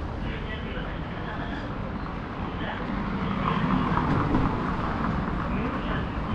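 Busy city street ambience: passersby talking and traffic noise, a little louder around the middle.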